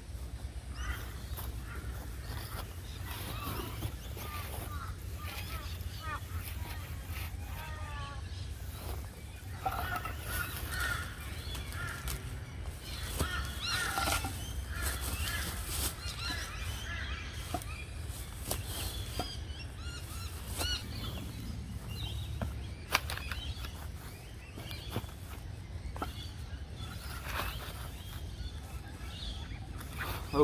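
Birds calling on and off over a steady low rumble, with a few sharp knocks and scrapes as wooden boards are handled and set down on the ground.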